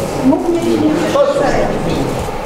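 Only speech: voices talking in a meeting hall, with no words made out.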